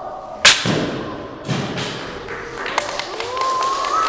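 A wooden stick struck hard against a karateka's body in Sanchin kitae conditioning. It gives a sharp, loud smack about half a second in, then a second, duller thud about a second later.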